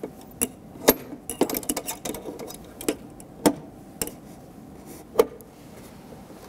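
Scattered sharp clicks and knocks, with a quick run of them about a second and a half in, as a glass gas-discharge tube is handled and fitted into the holder of a spectrum-tube power supply.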